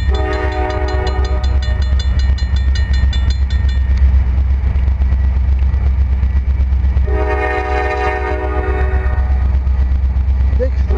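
Diesel locomotive air horn sounding two long chords, one at the start and one about seven seconds in, over the steady low rumble of an approaching freight train. A grade-crossing bell rings rapidly until about four seconds in.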